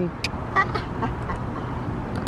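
A man's short laugh, faint, about half a second in, over a steady background hiss.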